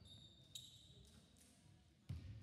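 Near silence: faint room tone with a faint steady high tone and a single faint knock about half a second in.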